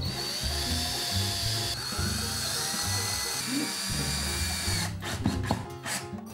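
Cordless drill driving screws into the lid of a shipping crate. The motor whines at a steady pitch that steps up or down twice, then stops about five seconds in, followed by a few clicks.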